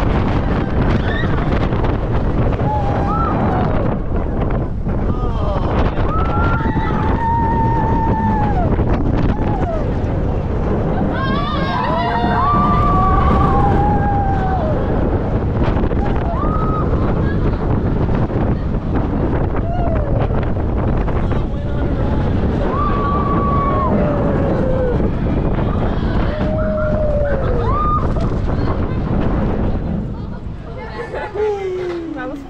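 Roller coaster ride in motion on an Intamin hydraulic launch coaster: loud, steady wind noise on the microphone over the train's running. Riders let out long screams again and again.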